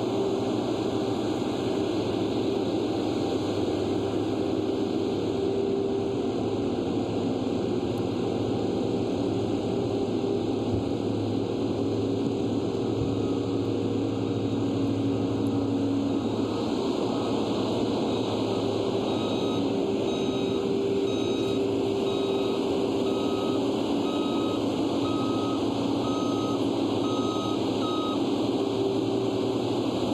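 Ingersoll Rand double-drum asphalt roller running, its diesel engine a steady drone. From about the middle a reversing alarm beeps about once a second, stopping near the end.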